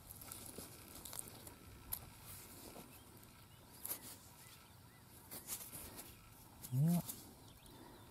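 Quiet open-field ambience with a few soft, scattered clicks and knocks and a couple of faint chirps, then a short spoken 'yeah' near the end.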